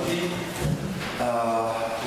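A man's voice holding long, drawn-out vowel sounds, like hesitation sounds between phrases, once at the start and again for the last second or so.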